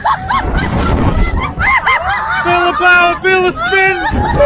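Riders whooping and shrieking on a swinging fairground ride, with wind rumbling on the microphone as the ride swings. Near the end, a run of four short, steady-pitched hoots.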